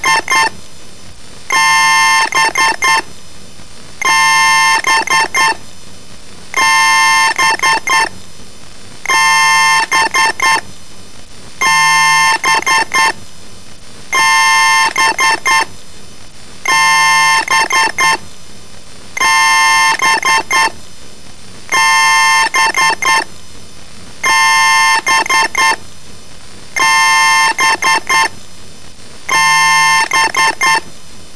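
A loud electronic chime-like sound, distorted by audio effects, looping about every two and a half seconds: each time a held tone followed by a quick stutter of about five short repeats.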